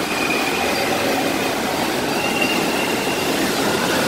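Waves in an indoor wave pool breaking and churning: a steady rushing of water with an even level throughout. Two faint high held tones sound over it, one near the start and one around the middle.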